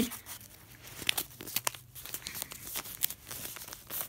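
A paper airplane being folded and creased by hand: irregular paper crinkles and crackles.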